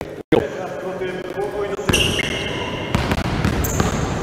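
Several basketballs being dribbled on a gym floor, the bouncing starting about two seconds in and running on as overlapping thuds. A few short high squeaks sound among the bounces.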